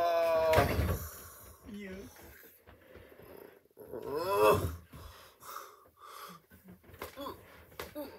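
A man's wordless vocal sounds. A drawn-out call falling in pitch ends just after the start and gives way to a loud breathy rush. A second, shorter wavering call comes about four seconds in.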